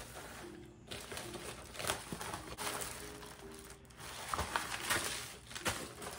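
Paper and plastic packaging rustling and crinkling in irregular handfuls as it is handled, over faint background music.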